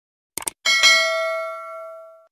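Subscribe-button animation sound effect: two quick mouse clicks, then a bright bell chime for the notification bell, struck twice close together, ringing and fading over about a second and a half.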